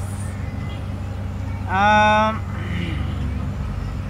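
A person's voice holding one drawn-out wordless note for under a second, about two seconds in, over a steady low background hum.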